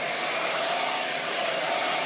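Handheld hair dryer running steadily as the hair is blow-dried straight: a constant rush of air with a faint steady whine under it.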